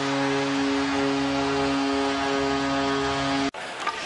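Arena goal horn sounding one long steady blast for a home-team goal, over crowd noise, cut off abruptly about three and a half seconds in.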